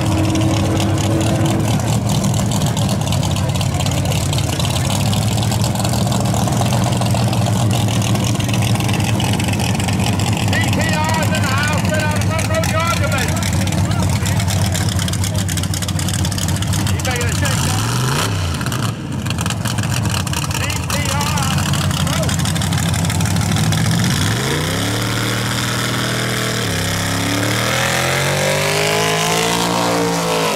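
A drag-racing car's engine running at a loud idle, with a quick rev about eighteen seconds in. Near the end it revs up in rising steps as the car does a burnout.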